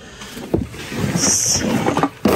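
Hands rummaging through a bin of mixed goods: plastic packaging and cardboard boxes rustling and shifting, with a single knock about half a second in and a brief high-pitched crinkle about halfway through.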